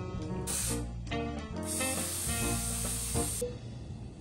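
Aerosol nonstick cooking spray hissing from a can onto a metal doughnut pan, to grease it so the doughnuts don't stick. There is a short burst about half a second in, then a longer spray of nearly two seconds.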